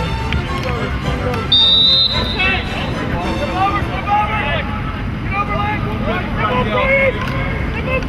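Voices shouting across a lacrosse field, with a short, loud whistle blast about one and a half seconds in.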